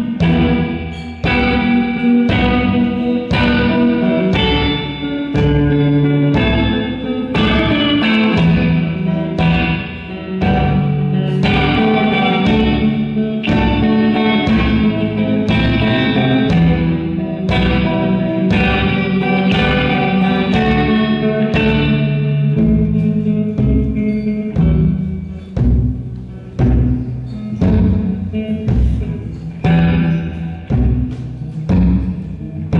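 Live solo instrumental passage: a guitar played in a steady rhythm over a regular low drum beat. It thins into sparser, gappier strokes near the end.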